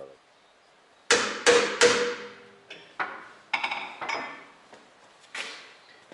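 A series of sharp metallic knocks, each with a short ring: three in quick succession about a second in, then several more spaced out. Steel tools or parts are being handled and struck against each other at a lathe-mounted boring setup.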